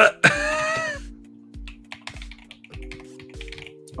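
A short laugh, then computer keyboard typing: scattered key clicks over background music with held chords and a steady low beat.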